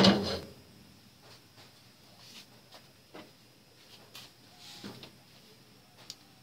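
A single loud knock with a short ringing at the very start, as the lid settles on the steel steamer pot, followed by a few faint clicks.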